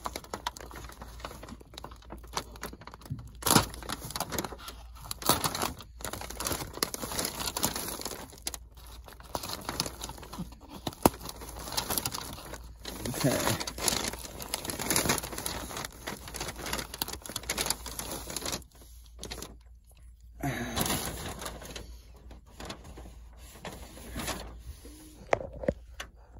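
Vapor-barrier sheeting crinkling and rustling irregularly as hands work it around a hole, with sharp crackles now and then.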